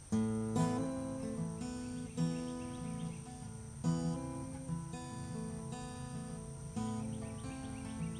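Acoustic guitar playing an instrumental intro: chords struck and left to ring, the first coming in sharply just as the sound begins, with fresh accents every second or so.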